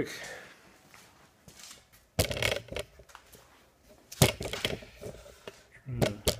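Handling noise from the camera rig being carried and set in place: a sharp knock about two seconds in and another about four seconds in, each followed by brief clattering and rattling.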